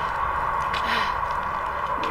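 A woman's breathy exhale about a second in, with no words, over a steady low rumble and a constant hum.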